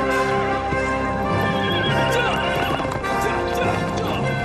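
Horses' hooves clip-clopping, with a horse whinnying in a wavering, falling call around the middle, over background music.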